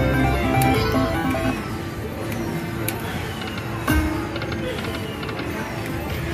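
Video slot machine playing its electronic tune and chimes, with repeated falling sweep sounds as the reels spin. There is a single knock about four seconds in.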